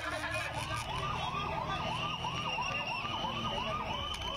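Police escort vehicle's electronic siren in a fast yelp, the pitch sweeping up and down about three times a second.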